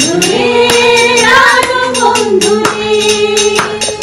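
A small group of women singing a song together, holding long notes, over a steady beat of hand-claps.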